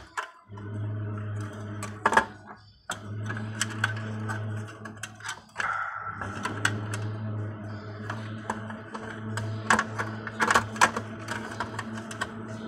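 Scattered sharp clicks and knocks of hands handling metal and plastic parts and cable connectors inside a Toshiba e-Studio copier's scanner section, the loudest about two seconds in and again near the end. Under them runs a steady low hum.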